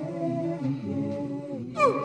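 Layered a cappella vocal loops from a loop station: several hummed, chant-like voices sounding together. Near the end a brief sharp sweep falls steeply in pitch and is the loudest sound.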